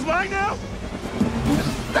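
Film soundtrack of a desert vehicle chase: a man shouts a short line, then a steady rush of a speeding vehicle's engine and wind noise, with another man's shout starting near the end.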